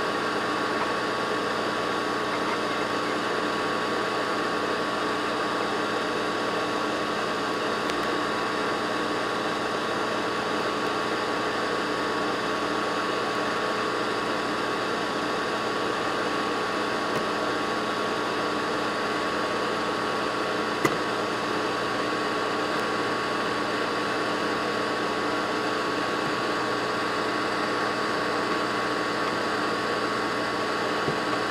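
Handheld hot-air soldering gun running steadily while heating solder joints to desolder MOSFETs from a circuit board: an even hiss of blowing air with a steady whine. One short click about two-thirds of the way through.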